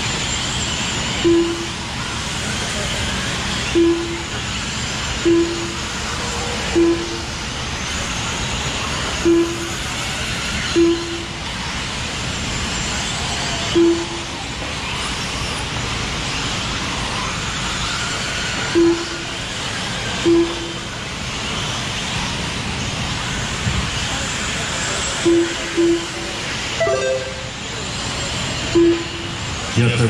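Radio-controlled off-road race cars running on a dirt track, their motors whining up and down. A dozen short single-pitched beeps come a second or a few seconds apart, typical of a lap-timing system registering cars as they cross the timing loop.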